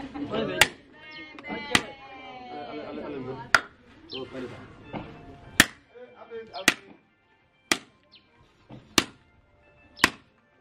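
A machete chopping butchered meat and bone on a tarp laid on the ground: about eight sharp blows, roughly one a second.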